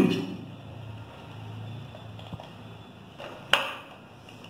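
Plastic measuring scoop knocking against a metal formula-milk tin as powder is scooped out: a few faint clicks, then one sharp, ringing clink near the end.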